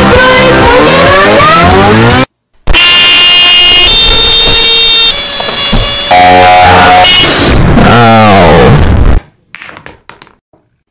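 Deliberately overdriven, distorted audio. About two seconds of distorted singing over music, then a brief silence. Then a loud electric car horn blares, its pitch edited to jump up and down in steps, bending into a wavering glide before cutting off suddenly about nine seconds in.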